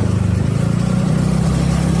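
Steady low engine hum and road noise of a motor vehicle travelling along a city street.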